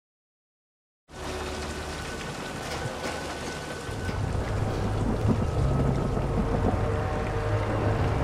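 Film soundtrack storm ambience: silence, then about a second in a steady rush of heavy rain with a low rumble, over which a low drone slowly swells.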